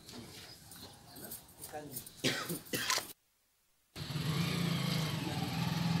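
Faint outdoor voices with a few sharp sounds, then a complete dropout to silence for almost a second. After the dropout a steady low hum comes in under murmuring voices.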